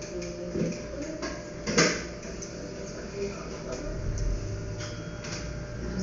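Room background of faint, indistinct voices with a few scattered clicks; one sharp click about two seconds in is the loudest sound.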